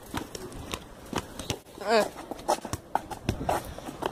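Irregular light knocks and clicks, with a short vocal "uh" about two seconds in.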